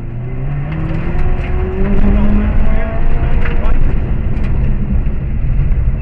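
Subaru Impreza rally car's flat-four engine heard from inside the cabin under hard acceleration. The revs climb, then drop at an upshift about two and a half seconds in, and the engine pulls on. Sharp ticks of stones thrown up from the loose road surface strike the car throughout.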